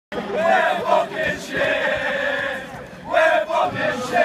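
A group of men, footballers, chanting a celebration song together, loud, with long held notes and a short break just before it picks up again.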